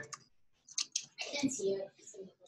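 Computer keyboard keys clicking a few times as code is typed, with faint talk behind.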